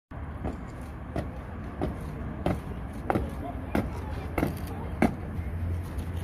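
Honor guards' boots stamping on stone pavement in a slow ceremonial march: eight sharp, evenly spaced steps about two-thirds of a second apart.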